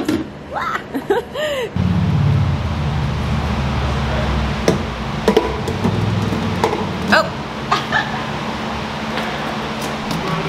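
Brief laughter, then quart bottles of automatic transmission fluid handled and poured into a plastic pump jug, with a few sharp plastic clicks and knocks over a steady low rumble.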